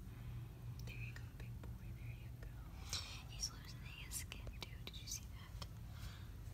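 Soft, unintelligible whispering, with a few faint clicks over a low steady hum.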